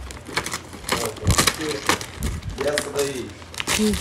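Gift wrapping paper being torn and crumpled by hand as a present is unwrapped: a run of irregular crackling rips and crinkles.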